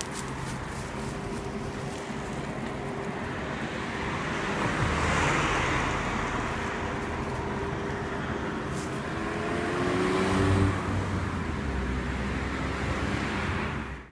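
Road traffic: motor vehicles passing close by, a steady rush of tyres and engines that swells to a peak about five seconds in and again, louder and deeper, near eleven seconds.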